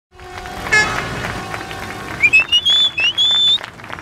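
Street traffic at an intersection, with a short car-horn toot about three-quarters of a second in, followed by a series of short rising whistle-like tones.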